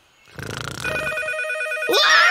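Telephone ringing with a fast trilling ring, starting about a second in; a startled cry starts rising right at the end.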